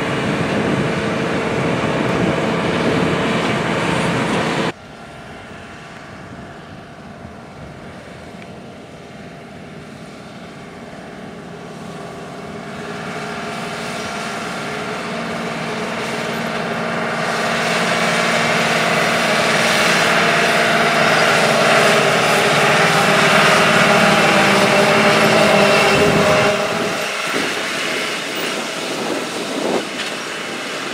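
John Deere R4045 self-propelled sprayer's diesel engine running as the machine drives past. About five seconds in the sound cuts abruptly to a fainter engine that grows steadily louder as the sprayer approaches across the field, then drops off near the end.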